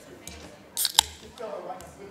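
Background murmur of people talking in a meeting room, with a short hiss and then one sharp click about a second in.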